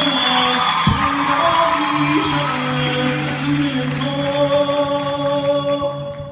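Live band music: a man singing long held notes over sustained keyboard and band accompaniment.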